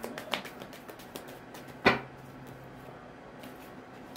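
A deck of tarot cards being handled and shuffled: scattered light clicks of card against card, with one sharp snap about two seconds in.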